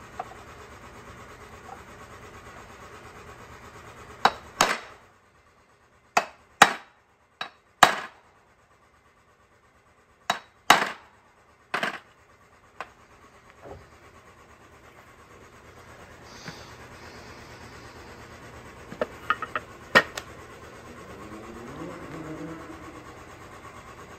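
Hammer striking the 6.0 Powerstroke's oil cooler in its metal housing to knock it free of the O-rings that hold it in tight. Sharp blows, mostly in quick pairs, come through the middle of the stretch, followed by a few lighter taps.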